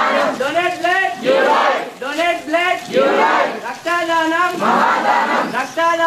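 A marching group of students chanting slogans in call and response: one voice shouts a line and the crowd shouts back in unison, about every two seconds.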